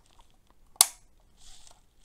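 A single sharp plastic click as the body of an OO-gauge model wagon snaps onto its chassis, followed by a faint soft hiss.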